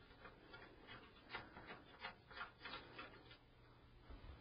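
Faint, irregular clicking, about three clicks a second, as a brass screw is turned in to fasten an expansion card's metal bracket to a PC case.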